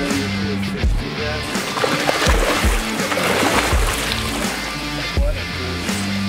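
Background music with a steady drum beat, with water splashing under it as a goliath grouper thrashes at the surface beside a boat.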